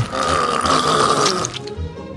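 A rough, noisy vocal sound effect of someone being forcibly silenced, over background music; it stops about one and a half seconds in.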